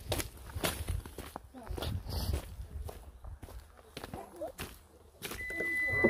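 Footsteps on a gravel and dry-leaf dirt track, then near the end a steady electronic beep about a second long from a Haval Dargo SUV as its tailgate opens.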